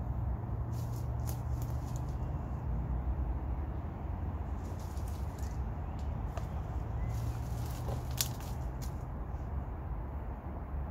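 Footsteps and rustling in dry leaf litter and twigs, with scattered small crackles and clicks over a steady low rumble, and one sharp click about eight seconds in.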